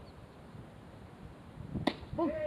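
A single sharp crack of a baseball bat hitting the ball near the end, after a quiet stretch of faint background.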